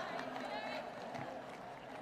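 Faint, indistinct voices over a low background hum, well below the level of the preaching.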